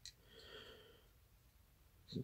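Near silence: room tone, with one faint, short breath from the man about half a second in.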